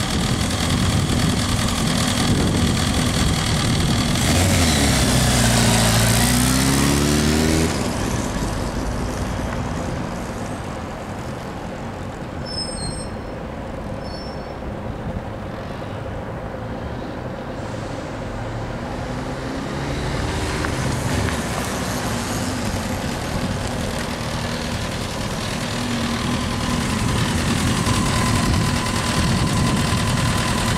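Kawasaki ZX-10R's inline-four engine running, revving up in a long rising sweep as the bike pulls away, fading as it rides off, then revving and growing louder again as it comes back.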